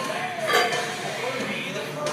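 Background music with a person's voice over it.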